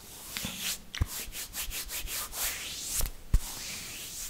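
Bare palms rubbing together right against a microphone, a dry swishing friction in quick strokes. There is a sharp knock about a second in and a louder one near the end.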